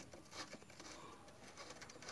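Faint, near-silent: a few light clicks of a socket wrench working the suspension link nut, with a bird calling faintly in the background.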